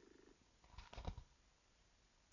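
Near silence between segments: the tail of a fading sound dies away just after the start, then a few faint, short knocks come about a second in.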